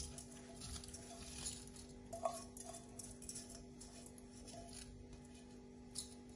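Faint patter and rustle of washed basmati rice grains sliding and being scraped by hand from a steel bowl into a saucepan, with a small click a little after two seconds. A faint steady tone runs underneath.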